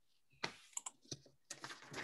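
Faint computer keyboard typing: a few irregular key clicks over a video-call microphone.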